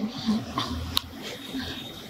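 Soft laughter in a room, faint and muddled, with one sharp click about halfway through.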